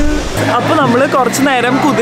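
Speech only: a woman talking, with a steady low hum underneath.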